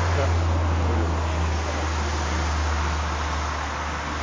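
A vehicle engine idling, a steady low hum under a constant hiss, with faint voices in the background.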